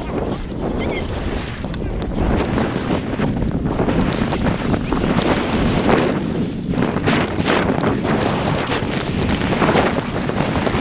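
Wind rushing and buffeting over a GoPro's microphone while skiing fast downhill through deep powder, a loud, uneven rushing noise that surges in gusts.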